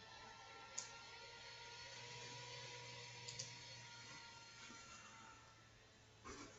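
Near silence: faint room tone with a steady low hum, broken by a few faint computer-mouse clicks, one about a second in and a quick pair around three seconds in.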